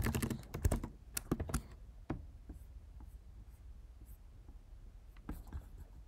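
Typing on a computer keyboard: a quick run of keystrokes in the first two seconds, a quieter lull with only a few keys, then more keystrokes near the end.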